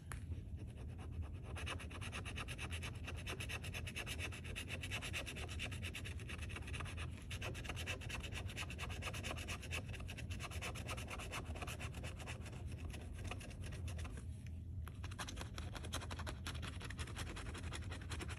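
The edge of a metal bottle opener scratching the coating off a scratch-off lottery ticket in quick, continuous rubbing strokes, with a brief pause near the end.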